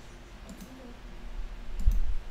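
Computer mouse clicks: a faint click about half a second in, then a few sharp clicks near the end together with a low bump against the desk.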